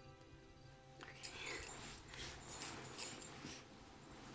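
Quiet film score with softly held notes. From about a second in, two and a half seconds of close, breathy rustling sit over it.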